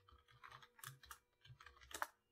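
Faint computer keyboard typing: a quick, uneven run of light key taps.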